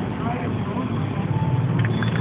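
Busy street noise: scattered voices of people talking over a steady rumble of traffic, with the low rumble swelling about a second in.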